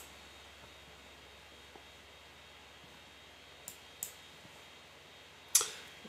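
Faint steady room tone with computer mouse clicks: one at the start, then two quick clicks about a third of a second apart roughly two-thirds of the way through. A short breath comes just before the end.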